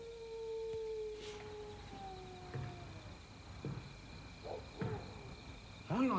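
A long, drawn-out howl: one held note that slowly sinks in pitch and fades out about three seconds in. A few faint knocks follow in the quieter second half.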